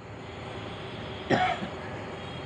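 A single short cough about a second and a half in, over a steady low background hiss.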